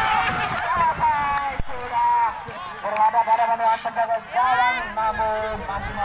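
Several people shouting and calling out over one another, in high, strained voices that are loudest in the second half. A single sharp knock comes about one and a half seconds in.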